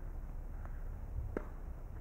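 Steady low outdoor rumble with two faint sharp knocks, about half a second and a second and a half in: a tennis ball bouncing and being struck by a racket on a two-handed backhand.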